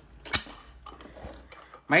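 Metal clinks from a Fujiwara steel bench vise being handled: one sharp clink about a third of a second in, then a few lighter clicks.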